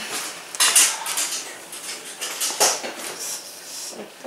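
Zipper on a heated blanket wrap being pulled up in several short strokes, with fabric rustling. It is loudest about a second in and again near three seconds.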